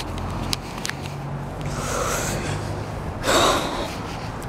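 Two short, breathy snorts, the second and louder one about three seconds in, after a few faint clicks.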